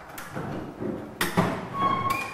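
Bow-mount trolling motor mount clanking and rattling as the motor is pulled up by its cord and swings over the boat's lip, with a sharp knock a little over a second in and a short metallic ring near the end.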